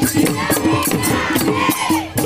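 Bihu folk music with drums beaten in a quick, even rhythm, sharp cymbal strokes about four times a second, and voices singing.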